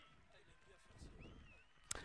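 Near silence, with a faint brief click near the end.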